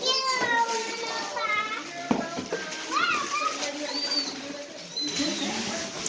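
High-pitched children's voices calling out and chattering, with a single sharp knock about two seconds in.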